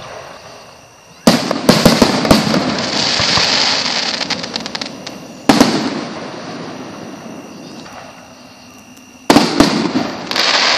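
Aerial fireworks bursting overhead: three loud bangs, about a second in, about halfway through and near the end. Each bang is followed by a crackle that fades over several seconds.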